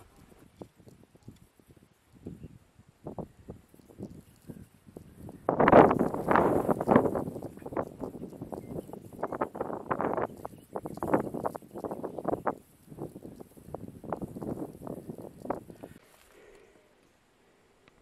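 Irregular crunching and rustling on dry ground, many short uneven knocks, over a faint steady high hiss; both stop shortly before the end.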